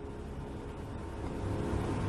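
Steady low background hum and hiss with a few faint held tones, growing slightly louder near the end.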